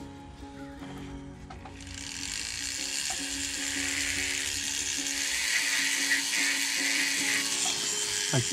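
High-speed rotary carving handpiece running with a steady whine. From about two seconds in, its flat-tip diamond bit grinds into the wooden fin with a hissing sound as it cuts the splits in the fin rays.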